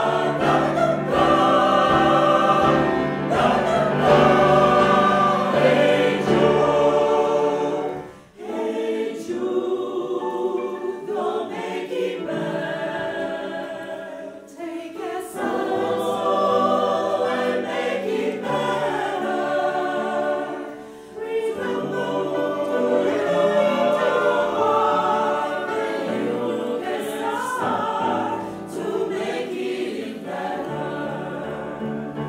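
Mixed choir of women's and men's voices singing with grand piano accompaniment, the phrases breaking off briefly about eight seconds in and again about twenty-one seconds in.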